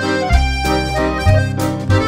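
Accordion-led ballroom dance music (liscio) from a band with keyboards, the accordion carrying the melody over a steady bass beat that changes about once a second.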